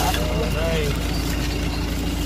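A voice speaks briefly in the first second over a steady low mechanical hum that runs unchanged underneath.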